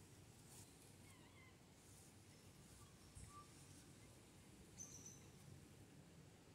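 Near silence: faint background hiss, with a few faint short high chirps, the clearest about five seconds in.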